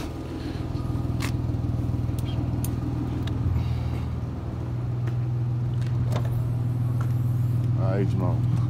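Car engine idling steadily, a low even hum, with a few light clicks over it.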